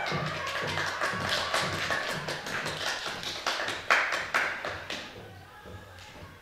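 A small group clapping, dense at first and thinning out as it fades over the last couple of seconds. The tail of the music sounds faintly underneath at the start.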